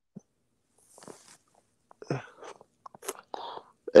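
Kitchen knife cutting through small chili peppers on a wooden cutting board: a few short, irregular crunches and taps, fainter near the start.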